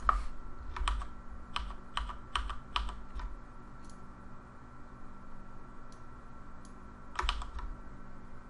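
Computer keyboard keys and mouse buttons clicking: about nine sharp clicks scattered over the first three seconds, a few faint ones in the middle and a short cluster near the end, over a faint steady hum.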